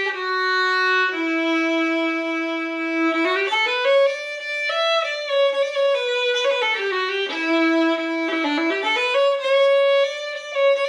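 Solo fiddle bowed slowly as a scale demonstration of E Dorian. It steps down note by note to a long held low note, then climbs and falls through the scale in quicker runs.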